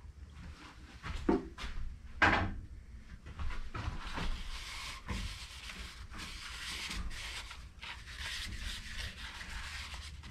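A paper towel wet with denatured alcohol rubbing the inside of a sanded pecan-and-resin bowl, wiping away the sanding dust. After a few light handling knocks, a steady scrubbing hiss of quick back-and-forth strokes begins a few seconds in.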